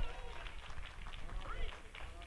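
Faint off-microphone voices in a church, congregation members calling out in response to the sermon, over a low rumble of room noise.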